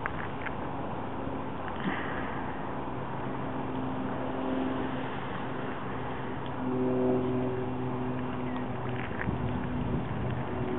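Steady wind noise with a distant engine droning at a steady pitch. The drone comes in about three seconds in, grows loudest around seven seconds, and fades near the end.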